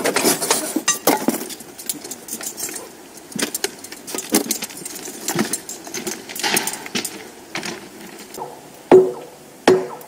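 Clinking and knocking of steel hand tools at a freshly poured thermite rail weld, then two sharp hammer blows on steel near the end, each with a brief ring.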